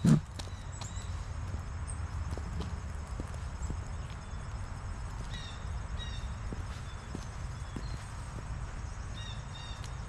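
High-heeled shoes stepping on an asphalt path, faint irregular clicks, over a steady low wind rumble on the microphone. A few short high chirps come about halfway through and again near the end.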